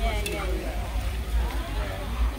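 Indistinct chatter of several people talking, over a steady low rumble.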